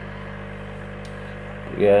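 Steady low electrical hum from an aquarium air pump running the sponge filters, with no change in pitch or level.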